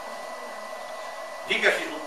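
Steady background hiss with a faint high tone during a pause in speech; a voice starts again about a second and a half in.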